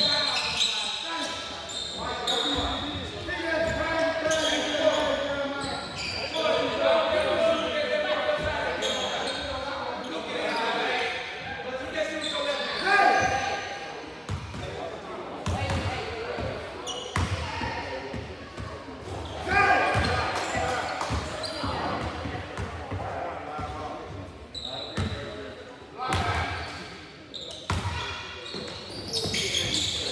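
Indoor basketball game: a basketball bouncing and thudding on a hardwood gym floor, with players and spectators calling out and talking. The sound echoes in the hall.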